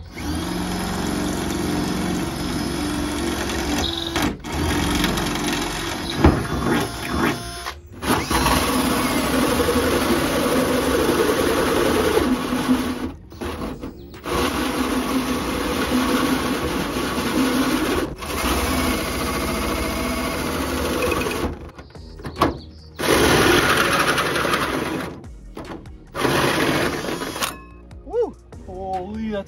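Cordless drill driving a hole saw through the sheet-steel bedside of a pickup truck. It runs in several long stretches with short stops between them.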